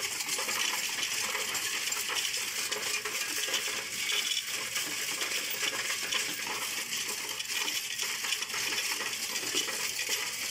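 Coinstar coin-counting machine taking in a steady stream of 1p and 2p copper coins pushed by hand from its tray: a continuous dense rattle and clinking of coins running through the machine as they are counted.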